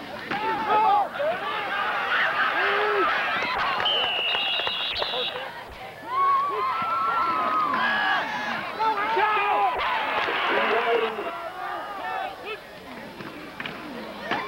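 Crowd of football spectators shouting and cheering, many voices overlapping. A high steady tone lasting about a second cuts through about four seconds in.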